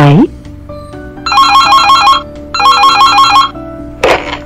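Telephone ringing twice, an electronic warbling ring, each ring about a second long, over soft background music.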